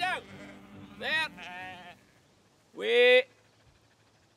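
Sheep bleating: a few separate bleats from the flock, the last and loudest about three seconds in.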